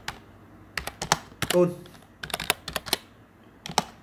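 Computer keyboard being typed on: quick keystrokes in short irregular bursts as a line of text is entered.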